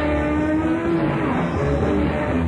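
Live jazz-rock band on an audience cassette recording: an electric guitar holds one long note that bends down slightly about a second in, over bass and drums.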